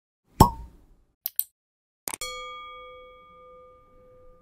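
Intro-animation sound effects: a single pop about half a second in, two quick clicks a moment later, then a bell-like ding about two seconds in that rings on and slowly fades.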